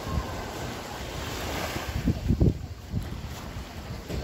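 Small waves washing up on a sandy beach, one wash swelling about a second and a half in. Wind buffets the microphone in low thumps just after it, the loudest moment.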